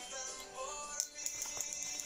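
Background music with soft held tones, and one short click about a second in.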